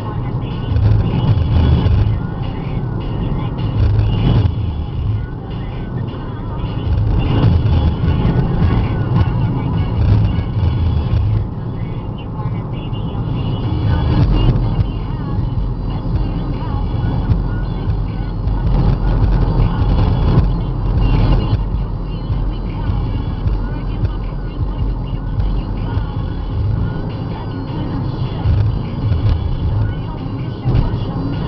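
Car driving at road speed, heard from inside the cabin: a steady road and engine rumble that runs on without a break.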